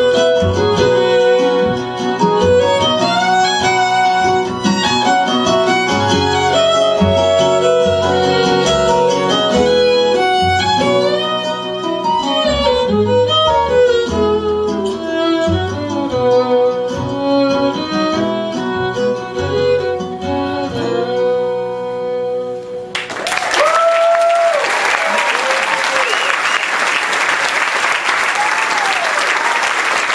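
Instrumental ending of an acoustic string-band song, with fiddle, acoustic guitar and cello and no singing. The music stops about two-thirds through, and an audience breaks into loud applause with a few whoops.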